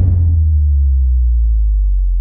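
A deep synthesized bass note in a hip-hop remix, held long and sinking slightly in pitch, with nothing else in the track above it.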